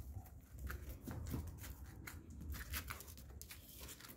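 Faint rustling and scattered light clicks over a low, steady rumble: a handheld phone being moved about.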